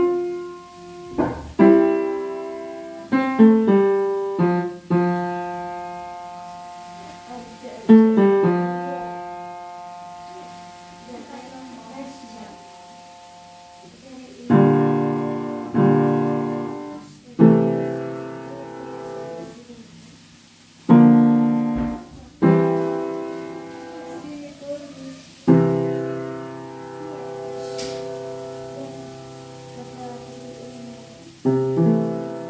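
Piano played slowly, mostly in chords that are struck and left to ring out, with a quieter, softer passage in the middle of the stretch.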